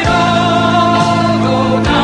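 A woman singing long held notes with vibrato over sustained instrumental chords and bass, the chord changing near the end.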